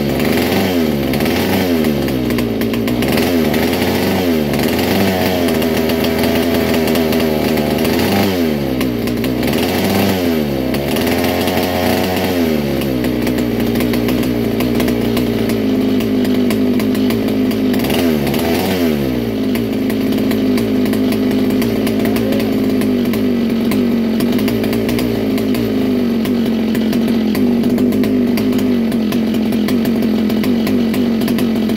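1961 Fox Kart's McCulloch MC-91 two-stroke single-cylinder engine running on its first start in about 40 years, its pitch repeatedly dropping and rising as the throttle is worked. After about 19 seconds it settles into a steady run.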